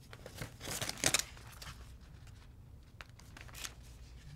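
Brief rustling, scraping handling noises, several in quick succession about a second in, then a few fainter ones, over a low steady room hum.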